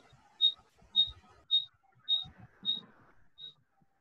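A short, high-pitched pip repeating evenly, a little under twice a second, six times; the last pip comes a beat later and is fainter.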